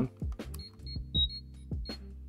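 Power Rangers morpher toy switched on, playing its communicator sound effect: a quick run of short, high electronic beeps.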